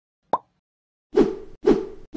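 Cartoon pop sound effects: one short pop rising in pitch, then two louder pops about half a second apart, each fading quickly.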